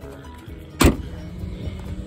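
A car door on a 1961 Mercury Comet four-door shut once with a single loud slam a little under a second in, over background music.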